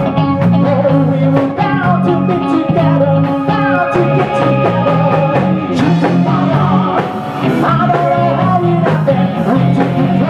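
Live pop-rock band playing a cover song with drums, bass, electric guitar and keyboard, and male and female voices singing.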